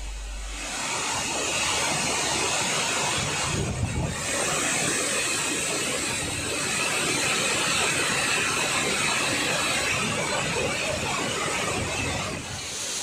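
Water rushing through opened dam spillway crest gates, a steady loud rush with a brief break about four seconds in.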